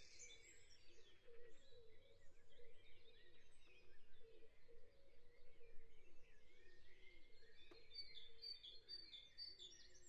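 Very faint bird chirps, scattered throughout, barely above silence.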